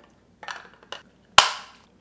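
Screwless plastic Raspberry Pi 4 case being clicked together: a little light handling, then one sharp snap about a second and a half in as the case closes.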